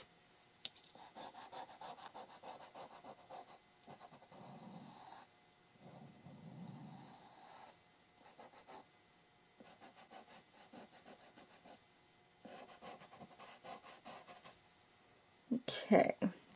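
Soft pastel stick and fingertip rubbing and scratching on sand-grain pastel paper, faint and in bursts of quick back-and-forth strokes.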